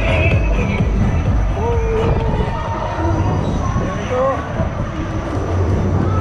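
Speed Buzz fairground spinning ride heard from on board as it turns: a steady, loud, uneven low rumble of the moving ride and wind on the microphone, with fairground music and voices over it.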